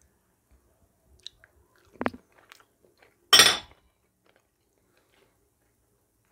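A person biting into and chewing a crisp, flour-coated, pan-fried egg-and-cheese patty. There is a short sharp click about two seconds in and one loud crunch a little after three seconds, with quiet chewing around them.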